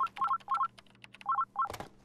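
Electronic telephone tones: short two-note beeps in quick pairs, several groups over two seconds, with light clicks between them.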